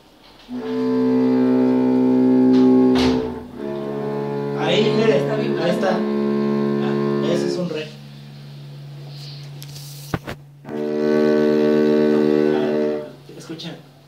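Cello bowed in three long held notes, one after another, with a low steady tone still sounding underneath and between them.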